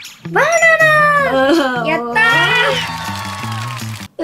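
A high-pitched, drawn-out, meow-like voiced cry, heard twice, over background music with a stepping bass line.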